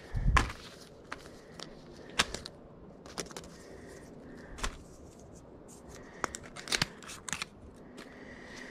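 Small paper cards, tags and plastic packaging being handled and dropped into a plastic-lined trash can: scattered crinkles and light clicks, irregular, with a few sharper ones near the start and a cluster near the end.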